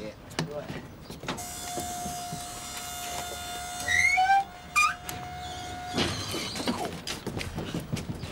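Electric motor of a lorry's powered tail lift running with a steady whine for about four and a half seconds, with a couple of short rising squeaks near the end, then stopping abruptly.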